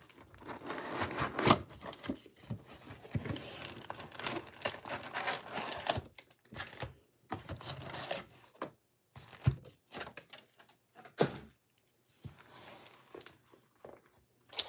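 Plastic shrink wrap being torn and crinkled off a cardboard trading-card box for about the first six seconds. Then the box is opened and plastic-wrapped card packs are pulled out and stacked, giving scattered short rustles and light knocks.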